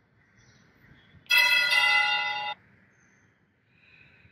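Altar bells rung at the elevation of the consecrated host: one bright cluster of ringing tones lasting just over a second, starting suddenly and cut off abruptly.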